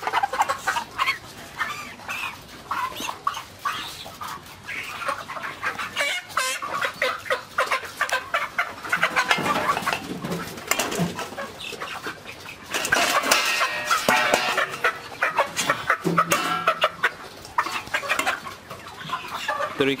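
A flock of six-week-old Ross 308 broiler chickens clucking and calling, with many short overlapping calls and a louder stretch of calling about two-thirds of the way through.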